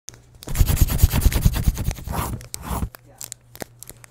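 Intro sound effect of a pencil scribbling fast on paper: a run of quick scratchy strokes for about two and a half seconds, ending in two longer swishes, then a few faint ticks.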